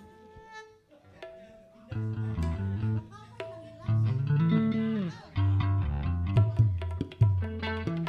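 Loose plucked-string playing on bass and guitar: quiet for about the first two seconds, then separate low notes and short phrases, with one note sliding down in pitch about halfway through.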